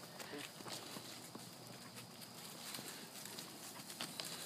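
Faint, irregular footsteps and scuffs on dry leaf litter along a dirt trail, small crunches and ticks at no steady rhythm.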